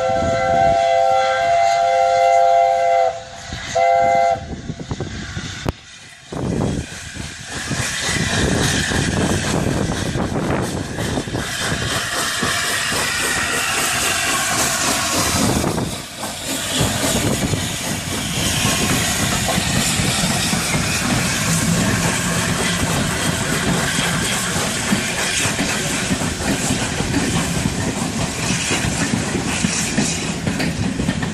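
LNER A4 Pacific steam locomotive's three-note chime whistle sounding one long blast, then a short one about a second later. About six seconds in the train starts rolling past close by, a loud continuous rush and clatter of the locomotive and coaches that carries on to the end.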